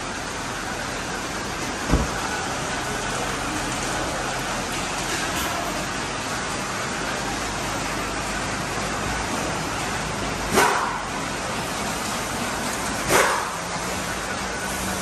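Steady background noise of a car workshop, with a car door shutting with a low thump about two seconds in. Two short, loud sounds follow near the end, about two and a half seconds apart.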